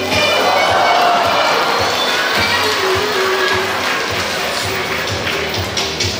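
Audience cheering and exclaiming, swelling in the first couple of seconds, over upbeat show music with a steady beat.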